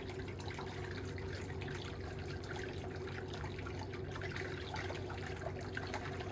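Steady background hiss with a low hum, level throughout, with a few faint small ticks.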